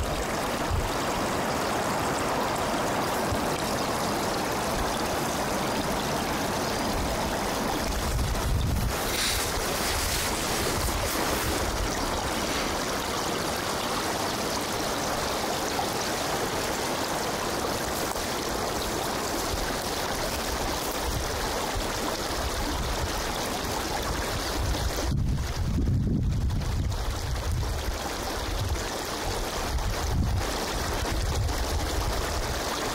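Steady outdoor rushing noise, with low rumbles of wind on the microphone about nine seconds in and again near the end.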